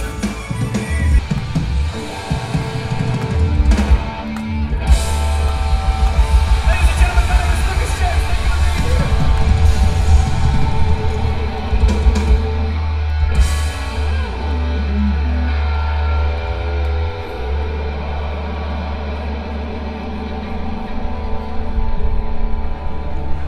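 Live rock band playing loud: electric guitars over a heavy, steady bass and a drum kit, with a brief break about four seconds in and a crash about thirteen seconds in.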